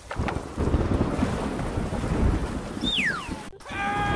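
Uneven wind noise buffeting the microphone outdoors, strongest in the low end, with a short falling whistle about three seconds in.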